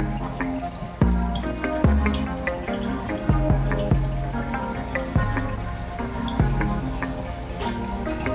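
Background electronic music with short plucked notes over a deep bass note every second or so.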